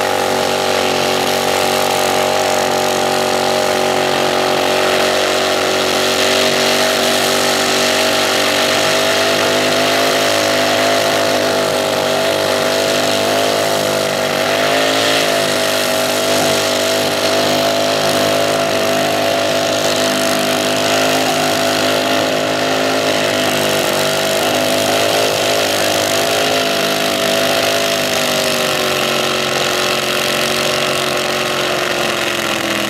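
Front-engine nitro slingshot dragster's engine running on at a steady high rev while the crashed car sits in a cloud of smoke pouring from its rear wheels, its pitch wavering briefly midway and sagging slightly near the end. The driver has passed out, so nobody is shutting the engine off.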